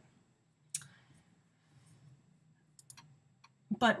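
A few sharp computer clicks over quiet room hum, the loudest about a second in and a quick cluster near three seconds, as the lecture slides are changed on the computer.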